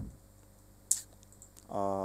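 A single sharp computer keyboard key press about a second in, followed by a few faint key taps; a man's voice starts again near the end.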